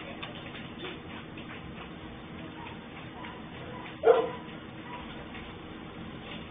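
A dog barks once, sharply, about four seconds in, over faint ticking and street background picked up by a CCTV camera's microphone.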